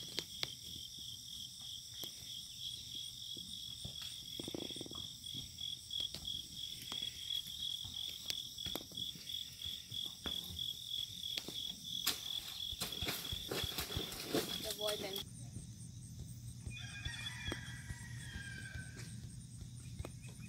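A steady, pulsing insect chorus of crickets or katydids with the soft, irregular hoofbeats of a Tennessee Walking Horse on dirt. The insect sound changes abruptly about fifteen seconds in to a different, higher pulsing chorus.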